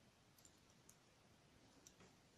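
Near silence with three faint clicks of metal knitting needles being worked.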